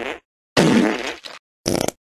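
A man's breathy, raspy laugh in short bursts of breath: one trailing off at the start, a longer one about half a second in and a brief one near the end, each cut off by silence.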